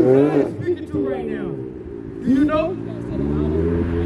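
A car passing on the street, its engine growing louder over the last second, with short fragments of a man's voice.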